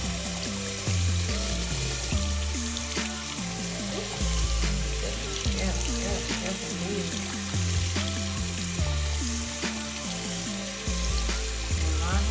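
Tap water running from a faucet into a sink over hands being rinsed and rubbed together. Underneath is music with a strong bass line that steps from note to note.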